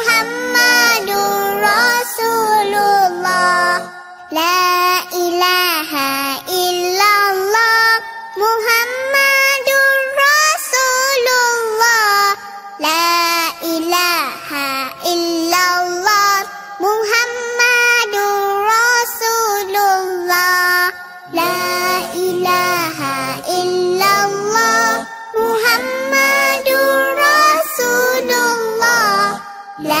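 A child's voice singing a nasheed melody over music, with long held notes that slide up and down between short breaths.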